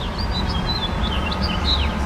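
Small birds chirping, a quick run of short high notes, some sliding down in pitch, over a steady low rumble.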